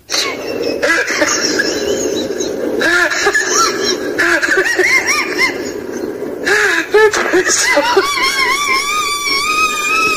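Laughing and squealing voices over a noisy background, ending in one long, wavering high-pitched cry over the last two seconds.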